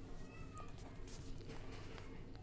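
Faint, short, high-pitched animal calls in the background, a few in the first second, over a low steady hum, with a brief sharp click about a second in.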